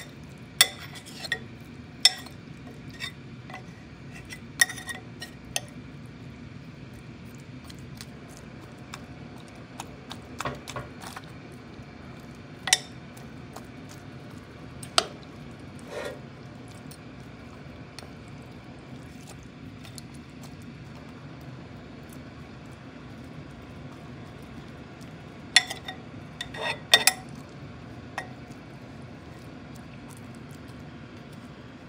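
Metal spoon clinking and scraping against a black clay pot as braised chicken pieces are basted and turned, in scattered clusters of sharp clicks: several in the first few seconds, a few in the middle and a quick run near the end. A steady low hum runs underneath.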